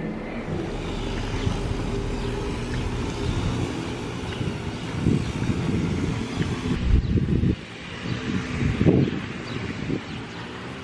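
Wind buffeting a handheld camera's microphone: an uneven low rumble that swells and eases in gusts, dropping briefly a little past halfway.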